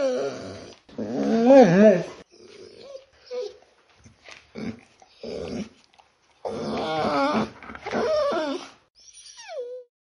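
A dog vocalizing in several drawn-out calls that waver up and down in pitch, with shorter grunts between them and a last short call that falls in pitch near the end.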